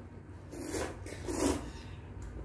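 A person slurping bibim naengmyeon, thin cold noodles in a spicy dressing, sucking them in with two quick slurps about a second in.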